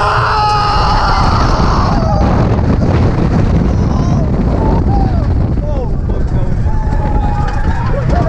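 Wind buffeting the microphone and the rumble of a wooden roller coaster train running down a drop. Riders scream over it, a long high scream at the start, then short yells.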